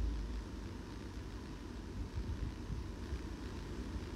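Low, steady background rumble with a faint hiss, with no speech.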